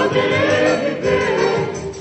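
Music from a 1950s 78 rpm shellac record: voices singing together in harmony over a band accompaniment, with the narrow, dull top end of an old recording.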